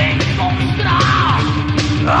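Heavy metal band on a 1992 demo recording: distorted guitars, bass and fast drumming, with a high sliding line that rises and falls in the middle.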